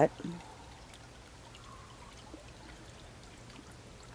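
Faint, steady trickle of a small stream, heard as a low even hiss.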